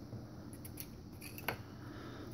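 Faint clicks of small plastic action-figure parts being handled as the Scarface puppet figure is worked onto the Ventriloquist figure's hand, with one sharper click about one and a half seconds in.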